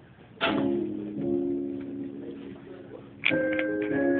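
Two chords played on an accompanying instrument: the first struck about half a second in and left to ring, the second, higher chord struck near the end.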